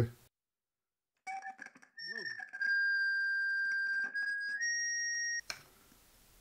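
Acoustic feedback from an ISD1820 voice-recorder board with its feed-through (FT) jumper set, so its electret microphone picks up its own small loudspeaker. After a few crackles and clicks, a steady high-pitched whistle sets in and shifts pitch a few times. It is far too much feedback, and it cuts off suddenly shortly before the end.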